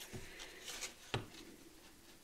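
Faint handling of a sheet of cardstock on a cutting mat: a few soft rustles and one light tap about a second in.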